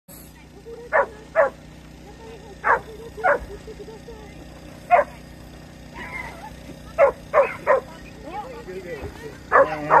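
A small dog barking in short, sharp, high barks, about ten in all, singly and in quick runs of two or three.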